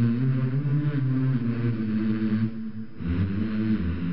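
Background music of sustained low notes that shift pitch in steps, dipping briefly about two and a half seconds in.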